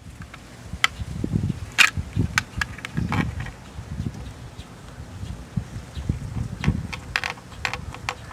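Open-end wrench working the nuts off bolts along a metal bar clamped across a fiberglass mold: scattered sharp metallic clicks over a low, steady rumble.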